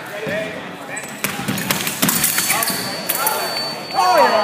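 Quick run of stamps and knocks from sabre fencers' footwork on the piste, amid voices in a large echoing hall. About two-thirds of the way in, a steady high electronic tone starts and holds: the scoring machine registering a touch.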